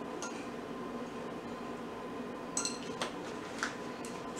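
A few light clinks of a small glass bowl, the first about two and a half seconds in with a brief ring and two smaller ones soon after, over a faint steady hum.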